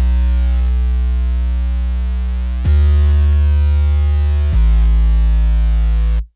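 Soloed Massive X sub bass synth playing three long held notes, changing at about two and a half and four and a half seconds in. It runs through Neutron 4's Exciter in Trash distortion mode, applied only above about 1.7 kHz, so the deep low end stays clean while the top end gets a gritty sizzle.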